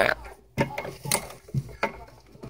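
Handling noise: irregular light clicks and rubbing as a hand-held camera is moved about under a desk among coax cables.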